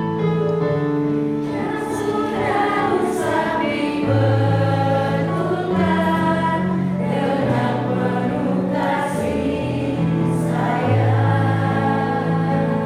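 A small group of mostly women singing an Indonesian hymn together, reading the words as they go, over held low chords from an electronic keyboard.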